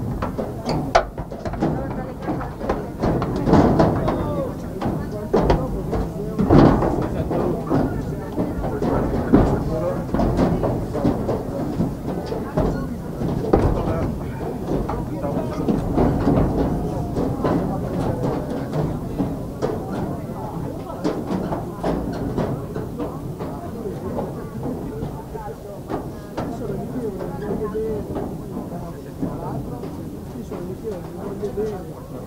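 Indistinct chatter of several spectators close to the microphone, over a steady low rumble of wind on the microphone.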